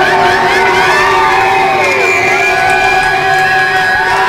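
Live audience cheering and whooping, many voices overlapping, with a steady held tone ringing underneath from the stage.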